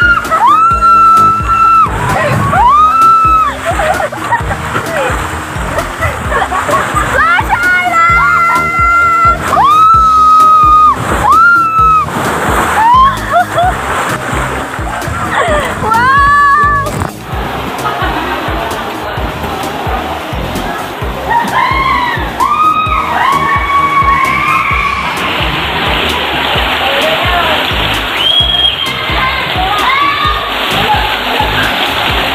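Repeated high-pitched screams, each held about a second, from a rider going down a waterslide on an inner tube, over rushing and splashing water. The screams come thickest in the first half, and softer voices follow later.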